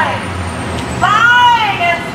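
A heavy road vehicle rumbling past on the street, then about a second in a high, drawn-out shouted call from a protester's voice, like a chant of "resign".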